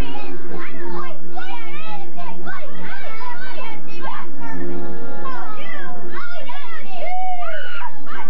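A group of young boys shouting and squealing excitedly, their high voices swooping up and down and overlapping, with steady music playing underneath.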